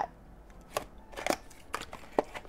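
Small cardboard blind box being handled and opened by hand: a few short soft clicks and tearing sounds of paperboard flaps coming apart.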